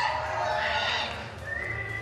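A high-pitched voice crying out in a long, wavering call, then a shorter high call near the end, over a steady low hum.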